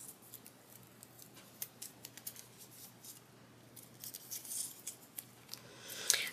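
Faint, scattered ticks and crackles of pink washi tape being handled, unrolled and peeled from its roll.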